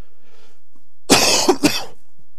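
A man coughs: one harsh cough in two quick bursts, just over a second in.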